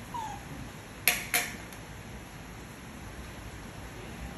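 A baby macaque's short falling squeak near the start. About a second in come two louder sharp clicks, about a third of a second apart: a metal utensil knocking on a ceramic plate.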